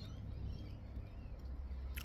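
Faint, steady low background rumble with no distinct sounds standing out.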